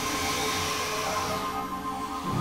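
Experimental electronic drone music: steady held synthesizer tones with a faint high whine gliding slowly downward and fading out, while the low bass drone drops away.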